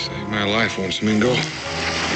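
A man's voice, briefly, over orchestral background music with held notes.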